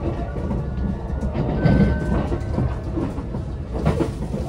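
Cabin noise of a JR West 289 series limited express train running on the rails, a loud, steady low rumble heard from a passenger seat, with a thin high tone briefly near the middle.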